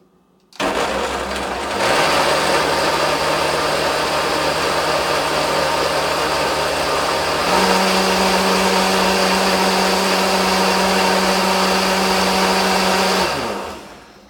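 KitchenAid countertop blender blending a smoothie. The motor starts about half a second in, is switched up to a higher speed twice (after about 2 seconds and again about halfway through), then is switched off and winds down near the end.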